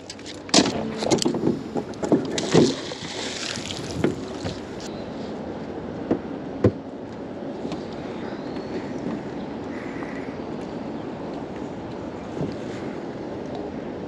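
Knocks and clatter of gear and rope being handled in a small boat for the first few seconds, then a steady hiss of wind and water, with two single sharp clicks about six seconds in, as a magnet-fishing rope is hauled in hand over hand.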